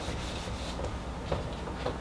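Whiteboard eraser rubbing across the board, a soft scrubbing with a few faint light taps.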